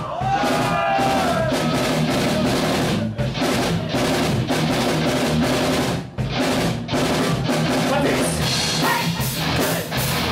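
Rock music with a full drum kit driving it, dense and loud throughout, with short breaks about three and six seconds in.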